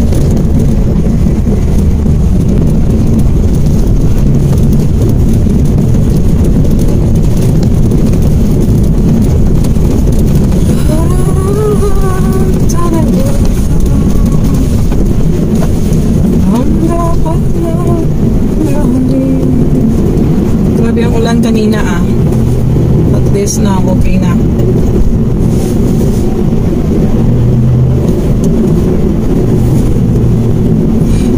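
Steady engine and road noise of a small Mitsubishi Mirage hatchback, heard inside the cabin while it drives along a wet road. A voice comes in faintly in the middle.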